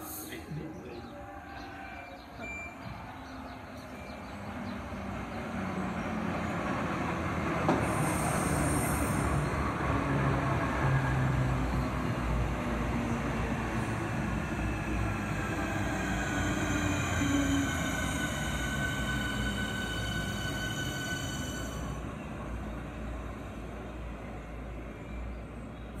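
Southeastern class 465 Networker electric multiple unit running into the station and slowing to a stop. The rumble of wheels on the rails builds over the first several seconds. From about halfway through, several high whines fall in pitch as it brakes, then fade near the end.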